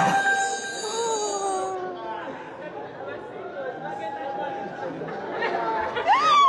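Several people's voices overlapping in excited chatter, with drawn-out gliding calls, one long falling call about a second in.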